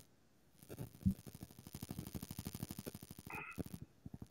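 Faint, rapid, evenly spaced clicking, more than ten clicks a second, with one short higher tone a little after three seconds in.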